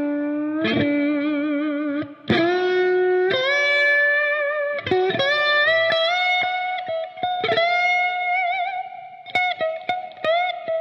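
Electric lap steel guitar played with a steel bar through an amplifier: a slow single-note melody, each note gliding into pitch and held with vibrato, with a few quicker notes near the end.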